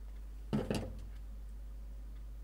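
A short knock and rattle of something handled or set down, about half a second in, with a smaller click just after, over a steady low hum.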